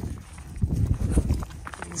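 Footsteps crunching on dry, gravelly ground, an uneven run of low knocks.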